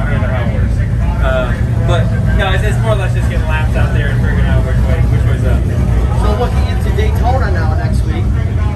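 Talking over a steady low rumble.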